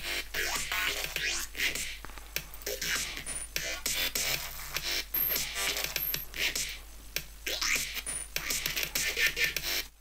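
Glitch hop track playing back from a music production program: a breakdown section of the electronic beat.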